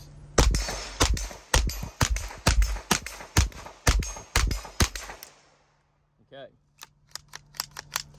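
Ten shots from a Standard Manufacturing Jackhammer .22 LR direct-blowback semi-automatic pistol, fired at a steady pace of about two a second. Each round cycles without a stoppage on CCI Mini-Mag ammunition. A few light clicks follow after a short pause.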